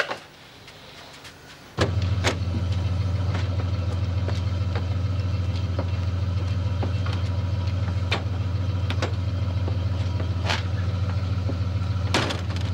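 An ambulance's engine idling with a steady, unchanging low hum that starts abruptly about two seconds in, with a few light clicks and knocks over it.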